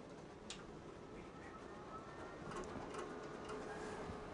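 Graphtec vinyl cutting plotter running a test cut: a faint motor whine that rises and falls in short strokes as the carriage and media move, with a light click about half a second in.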